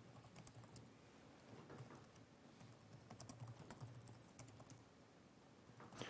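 Faint typing on a computer keyboard: scattered keystroke clicks, with a quicker run of keys in the middle, as commands are typed into a terminal.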